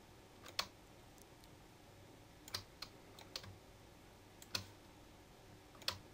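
About six scattered, faint clicks from a computer mouse and keyboard, over quiet room tone.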